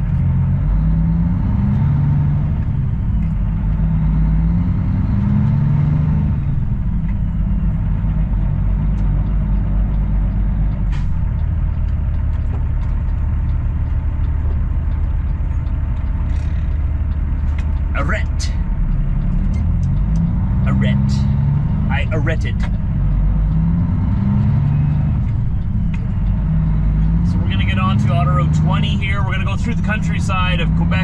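Semi truck's diesel engine heard from inside the cab, pulling a heavy load away and shifting up through the gears: the engine pitch climbs and drops back with each shift through the first six seconds, holds steady for a while, then climbs through shifts again from about twenty seconds in.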